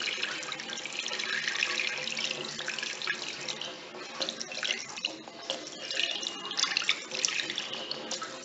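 Running water, like a tap pouring into a sink: a dense, steady splashing hiss.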